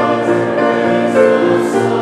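Congregation singing a hymn together, with piano accompaniment, in held notes that change about every half second.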